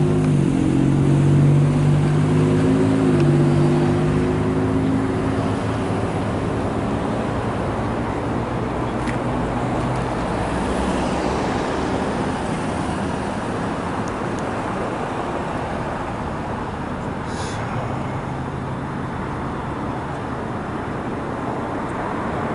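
Road traffic noise: a motor vehicle's engine running for the first few seconds, its pitch shifting a little, then a steady rush of passing traffic.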